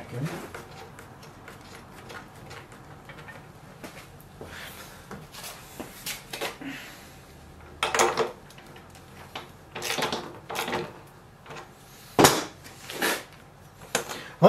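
Scattered clicks, knocks and clatter of a socket wrench and hands working on a small leaf blower engine as its spark plug is put back in, with a sharp knock near the end, the loudest sound.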